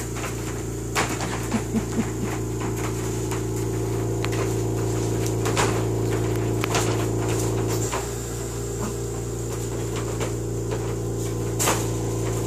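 A steady machine hum with a slight dip in level about eight seconds in, and a few light clicks and taps scattered through it.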